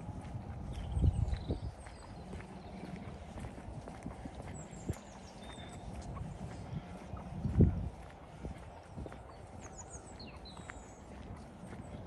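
Footsteps of someone walking on a paved path, with small birds chirping now and then. Two brief low rumbles of wind on the microphone, about a second in and at about seven and a half seconds, are the loudest sounds.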